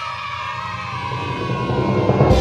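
Cartoon background music with a group of high cartoon voices cheering together in one long, slowly falling cry.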